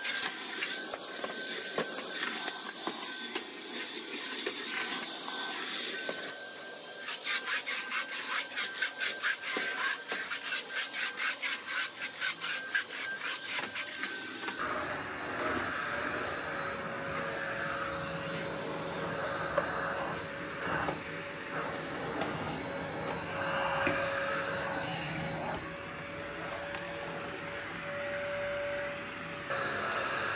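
Background music playing over an upright vacuum cleaner running on the floor. The sound changes character about halfway through, to a steadier machine hum.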